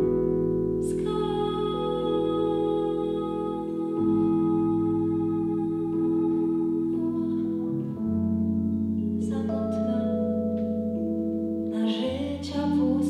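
Live band playing a slow pop ballad passage: long held keyboard chords with sustained vocal harmonies, the chord changing about every four seconds.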